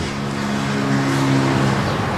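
A motor vehicle running close by: a steady engine hum over a rushing noise.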